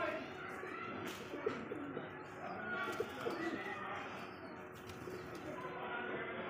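Domestic pigeons cooing in short, repeated low calls, with a faint steady hum underneath.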